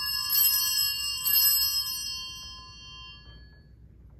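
Altar bell rung at the elevation of the chalice, marking the consecration of the wine: bright, high ringing that is struck again twice about a second apart, then dies away over a couple of seconds.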